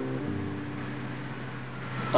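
Soft background music fading out: a few held keyboard notes, with one change of note just after the start, over a steady low hum.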